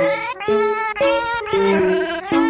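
Cat meows set to music as a meme song: a run of pitched meows, about two a second, over a musical backing.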